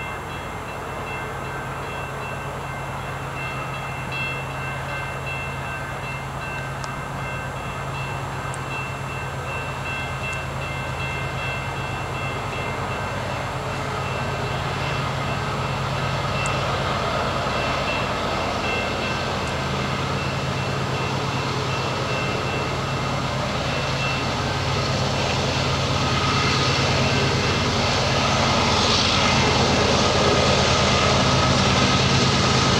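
Canadian Pacific freight train approaching behind its diesel locomotives: a low engine drone grows steadily louder, with the rush of wheels on rail building near the end. A bell rings steadily through most of it, in evenly repeated high strokes that stop shortly before the end.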